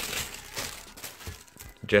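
Paper wrapping in a shoebox rustling and crinkling as a hand folds it back, dying away after about a second; a man's voice starts right at the end.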